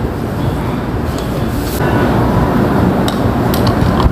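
A few light clicks of a metal spoon against a ceramic soup bowl, about a second in and again around three seconds in, over a loud, steady low rumble of background noise.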